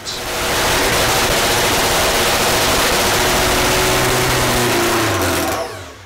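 Supercharged, nitro-fuelled Top Fuel drag motorcycle engine running loud and steady on its stand during a pit warm-up, then shut off and dying away near the end.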